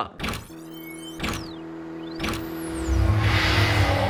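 Channel logo sting made of sound effects: sweeping whooshes that glide down and up in pitch, two sharp hits about a second apart, and a steady tone underneath. It builds to a low, noisy swell near the end.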